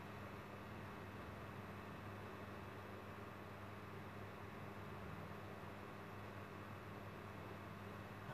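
Quiet room tone with a faint steady low hum, no distinct events.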